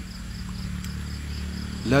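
Crickets chirping in a steady, high-pitched pulse of about four chirps a second, over a steady low hum.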